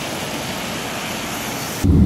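Steady, even hiss of a rain-wet city street, with no engine note or other distinct sound in it.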